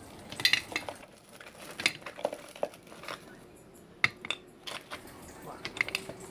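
Chunks of rock sugar being dropped by hand into a large glass jar on top of ume plums, making scattered, irregular clinks and knocks.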